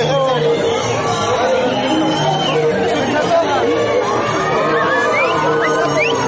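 Crowd chatter: many people talking and calling out at once over music playing.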